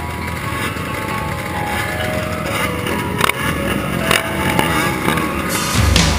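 Quad engines idling, led by the Kawasaki KFX 400's single-cylinder four-stroke through its HMF aftermarket exhaust, with a couple of short knocks about three and four seconds in. Heavy rock music comes in at the very end.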